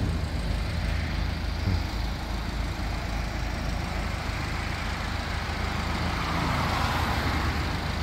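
The 2015 MINI Cooper Clubman S's 1.6-litre turbocharged engine idling steadily, a low even hum.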